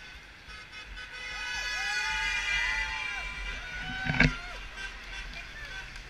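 A passing car's horn held for about four seconds, swelling and then fading as it goes by, with whoops from the marchers. A loud, short burst comes a little after four seconds in.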